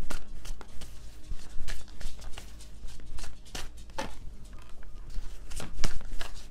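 Tarot deck being shuffled by hand: a run of irregular soft clicks and slaps of cards over a low steady hum.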